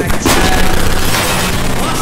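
A sudden loud crash-like burst of noise just after the start, with a second burst about a second in, over dramatic music.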